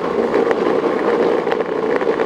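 Wheels of a Boosted electric skateboard rolling over rough brick paving: a steady rumble with small rattling clicks.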